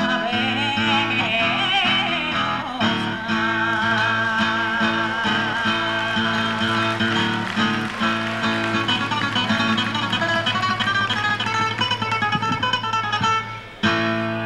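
Women singing with acoustic guitar accompaniment, the voices held with a wavering vibrato; the song ends shortly before the end.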